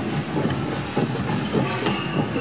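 A large truck driving slowly past close by, its diesel engine running under a busy, irregular rattling clatter.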